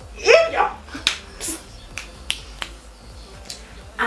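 A brief voice sound at the start, then a handful of sharp, separate clicks over the next couple of seconds.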